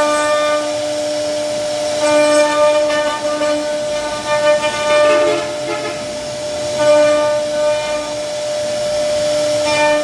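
CNC router spindle running with a steady whine as its bit carves a relief pattern into a wooden panel; a harsher, fuller tone swells in several times, about two seconds in, near seven seconds and again at the end, as the cut loads the bit.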